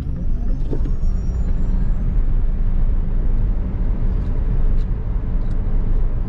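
Cabin noise of a Tesla Model S Plaid accelerating hard: a steady low road-and-tyre rumble, with a faint high electric-motor whine rising in pitch over the first two seconds and then holding steady.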